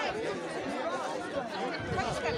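Many voices chattering at once, mostly children's, talking over one another in a small crowd.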